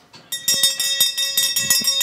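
A bell rung rapidly, about seven strikes a second, in a steady ringing that stops just before a town crier's "Hear ye, hear ye".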